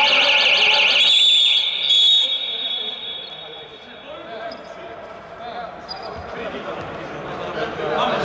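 Referee's pea whistle sounding a loud warbling blast that turns into a steadier high tone and fades out over the next few seconds. Afterwards only quieter voices echo in the sports hall.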